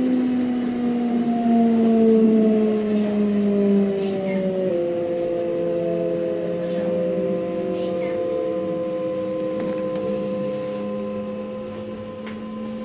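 Electric train's traction inverter and motors whining as it pulls out of a station, heard from the cab. Several tones slide slowly down, shift to a new set of steady tones about five seconds in, then hold with a low rumble underneath.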